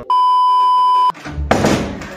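A steady electronic bleep, one flat tone held for about a second and then cut off, followed by a brief muffled thud and rustle.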